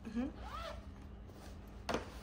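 Soft handling noise of a padded camera bag being turned over in the hands, with a short hummed vocal sound about half a second in and a single sharp click just before the end.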